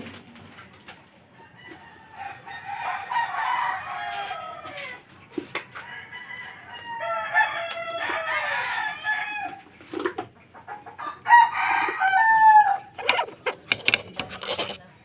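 Roosters crowing three times, each a long call that falls away at its end, the last one the loudest. Between the crows come a few short knocks from a hand-worked paddle churning ice cream in a metal canister.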